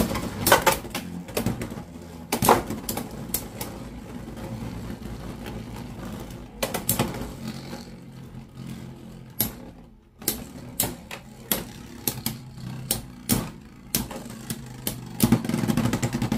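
Two Beyblade X spinning tops whirring in a plastic stadium, a steady drone broken by many sharp clacks as they collide with each other and the stadium walls.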